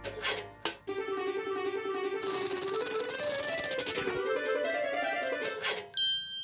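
Short musical sound-effect cue: a couple of clicks, then a wavering pitched tone that rises and falls, with a fast rattle over its middle, ending in a bright bell-like ding.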